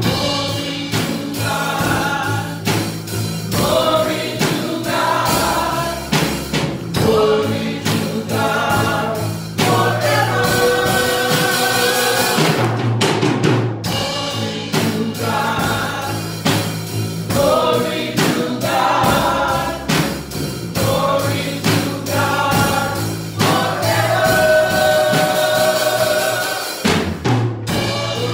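Live gospel worship song: a lead singer and backing vocalists sing over electric bass guitar, with long held notes and a steady beat underneath.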